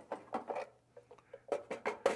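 A string of light clicks and knocks: the drip tray of a Gaggia Classic espresso machine, with its metal grate, being slid out of the machine and set down on a wooden table.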